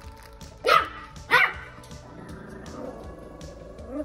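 Pomeranian puppy barking twice, two short high-pitched yaps a little over half a second apart, over background music.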